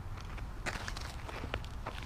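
Faint, scattered scuffs and crunches of shoes shifting on a dirt softball infield, over a low wind rumble on the microphone.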